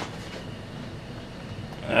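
Steady background room noise: an even hiss with a faint low hum.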